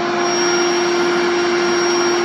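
Electric air pump running steadily, a constant rushing whir with a steady hum, as it inflates a half-filled airbed.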